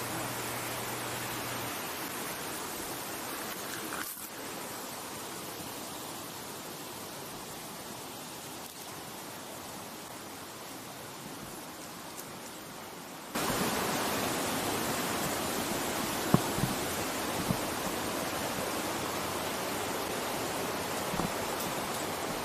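Steady rush of a rain-swollen river running fast over rocks and an old dam. The rush jumps abruptly louder about two-thirds of the way through, and a couple of short knocks follow.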